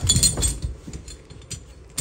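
Metal rigging hardware on the break-test bed clinking as it is handled: a few sharp clinks in the first half second, then quieter rattling.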